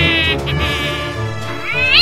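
Spooky background music, with a cat sound effect near the end: a loud yowling meow that rises and then falls in pitch.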